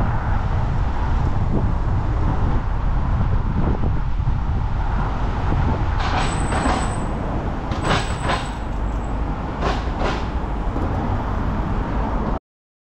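Steady rumble of wind on a cyclist's helmet camera and road traffic, with brief high squeals about six and eight seconds in, and a few sharp clicks between six and ten seconds.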